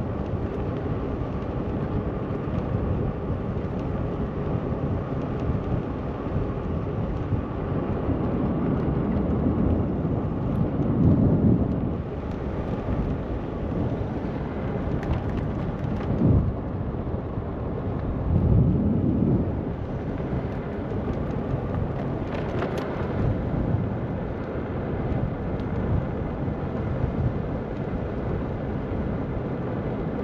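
Wind rumbling over the microphone of a moped rider on the move, a steady roar of road and wind noise. It swells louder twice, around ten seconds in and again just before twenty seconds.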